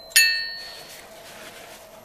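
A single metallic clink just after the start, as a steel socket knocks against metal, ringing briefly and dying away within about half a second.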